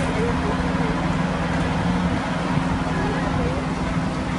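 Engine of a fire truck with its aerial ladder raised, running steadily at close range, with faint voices in the background.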